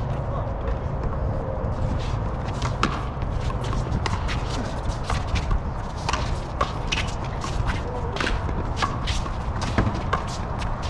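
A handball rally: sharp smacks of the small rubber ball struck by hand and rebounding off the concrete walls and floor, coming irregularly a few times a second, mixed with players' shoes stepping and scuffing on the court. The loudest smack comes just before the end.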